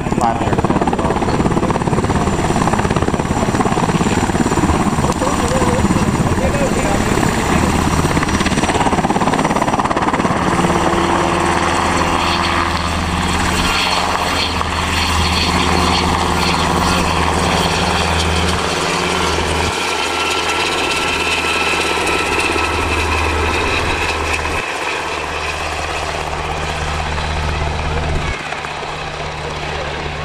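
UH-60 Black Hawk helicopter flying low past, its rotor and turbine engines making a loud, steady noise. The noise grows somewhat fainter near the end as the helicopter moves away.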